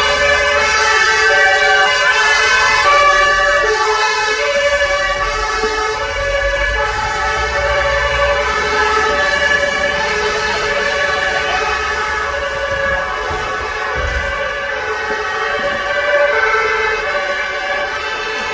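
Emergency vehicle sirens sounding steadily, a two-tone pattern switching back and forth between a higher and a lower pitch.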